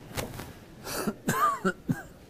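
Several short coughs and throat-clearings from men in a congregation, a single one near the start and a quick run of them in the second half.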